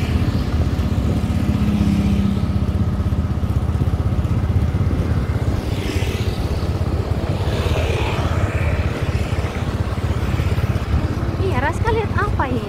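Small motorcycle engine running steadily while riding, with wind rumbling on the microphone.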